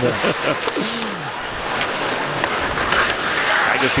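Ice hockey arena sound during play: crowd noise that swells from about a second and a half in, mixed with skates on the ice. A man's voice and a short laugh come at the start.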